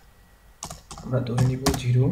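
A few computer keyboard keystrokes, sharp clicks, with a man's voice talking over them from about half a second in.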